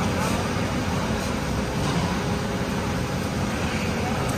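Steady, even rushing noise with a faint hum and no distinct events: the background air and fan noise of a large training hall.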